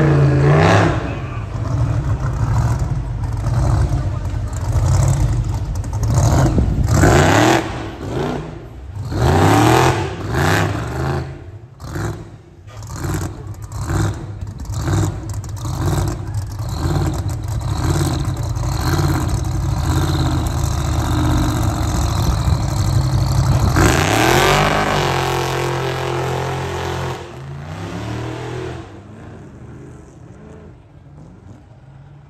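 Hot-rod and rat-rod truck engines revving and accelerating in repeated runs, the exhaust note rising and falling. One long climbing rev comes about three-quarters of the way through, then the engine sound fades toward the end.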